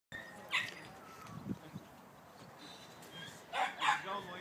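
A dog barking: one short bark about half a second in, then two louder barks near the end.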